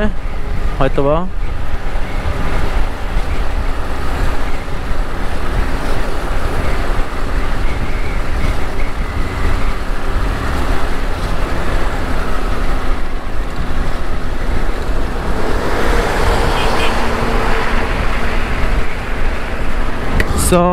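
Motorcycle riding steadily at road speed: wind rushing over the microphone on top of a steady engine hum and road noise.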